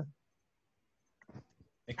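Video-call audio cut to dead silence between speakers, with a few faint clicks about a second and a half in.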